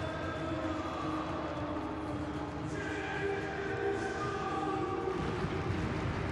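Stadium crowd of football supporters singing and chanting together, with held notes that shift in pitch every second or so.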